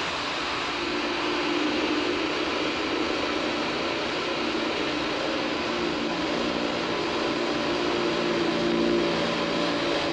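Electric power drill running steadily, its bit boring slowly into a wooden door, with a held, slightly wavering whine.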